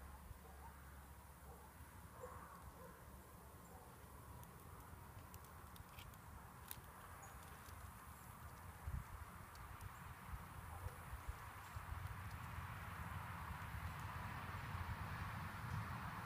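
Quiet outdoor background noise with a few faint clicks and a soft bump about nine seconds in. A steady hiss grows louder through the second half.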